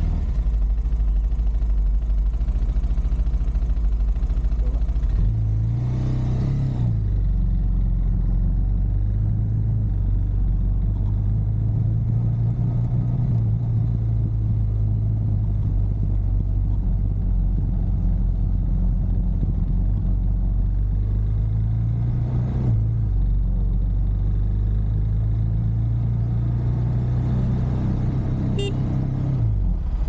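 Motorcycle engine running as the bike pulls away and rides along the road. Its note climbs and then drops back at gear changes about six seconds in and again about twenty-two seconds in.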